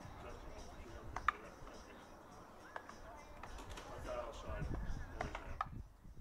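Faint, distant voices with a few sharp knocks, the loudest about a second in.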